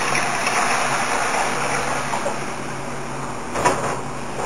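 Cold water pouring from a plastic bowl into a stainless steel hotel pan, a steady splashing that tapers off in the last second, with a short knock near the end.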